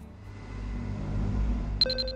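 Logo sting sound effect: a low rumbling swell that builds, then a sharp, bright chime near the end that rings on and fades.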